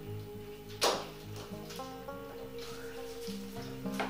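Soft background music with held notes. About a second in there is a single sharp click as a plant stem is cut.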